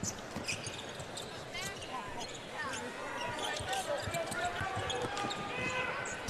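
Basketball arena crowd noise during live play, with a ball being dribbled on the hardwood court and scattered voices in the crowd.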